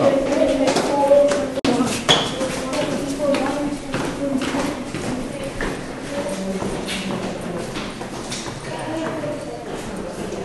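Footsteps climbing hard stone stairs, sharp clacks about two a second.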